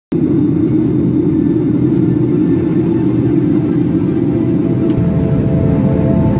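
A steady low rumble starts at once and holds level, with held musical notes coming in on top about five seconds in.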